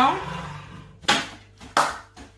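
Two sharp clacks of hard objects being handled on a kitchen counter: one about a second in and another just over half a second later, each ringing out briefly.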